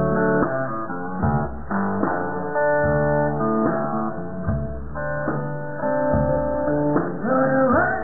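Live blues guitar playing: plucked notes and chords ringing in a steady rhythm, with some sliding notes near the end.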